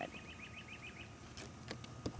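A bird singing faintly in the background: a quick trill of about ten short, high chirps in the first second, then only faint background hum.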